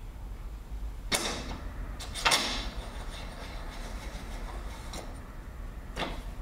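A suspension fork's one-piece magnesium lowers being slid off the stanchions of the upper unit: two short sliding knocks about a second apart, the second one louder, each dying away quickly.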